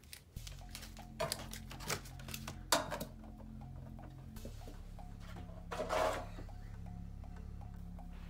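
Soft background music with a steady low tone, and a quick run of clicks and crinkles in the first three seconds from a booster pack and cards being handled.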